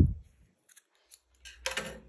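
Hands handling a cotton crochet top: a few faint clicks, then a short crisp rustle near the end.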